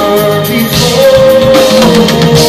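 Live progressive rock band playing loudly, with drums, keyboards and guitar under singing.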